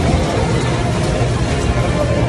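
Steady background noise of a busy supermarket checkout, with indistinct voices in the background.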